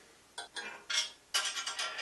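A red plastic bandsaw blade guard being slid onto the blade guide post and pressed into place, giving a few light clicks and clinks.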